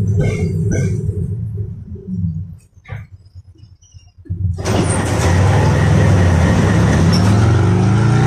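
Inside the car of a moving KTM-5M3 tram: the running rumble, with something tune-like over it, fades away to near silence about two and a half seconds in. About a second and a half later the steady rumble and hum of the tram under way cuts back in and carries on, loud.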